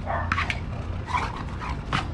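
American bulldog making short vocal sounds during play with its ball, with a few sharp clicks about half a second in, over a low steady hum.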